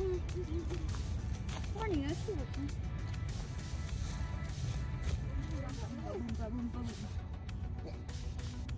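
A young child's high voice in short, sing-song utterances over steady background music.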